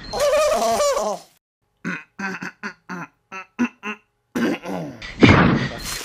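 Wordless cries and grunts from a cartoon character's voice: a wavering cry for about a second, then a rapid string of about ten short grunts or yelps, then louder cries near the end.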